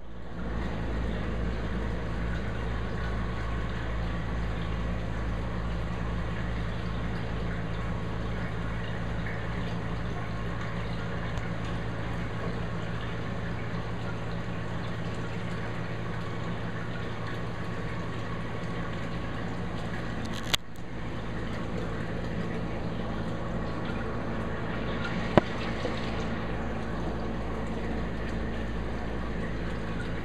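Steady running-water sound with a low electrical hum from a saltwater reef aquarium's circulation equipment. It breaks off briefly about two-thirds of the way through, and a single sharp click comes a few seconds after that.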